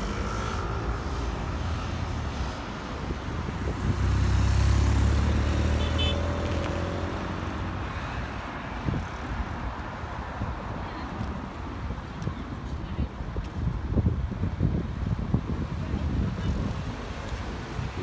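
Steady city road traffic around a large roundabout, with one vehicle passing close and loud about four to six seconds in. In the second half, gusts of wind buffet the microphone.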